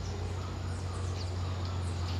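Outdoor ambience: a steady low hum under a faint hiss, with a few faint, brief high chirps of birds.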